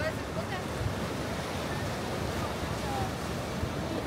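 Ocean surf breaking and washing over a rocky shore in a steady low rush, with wind buffeting the microphone and faint distant voices.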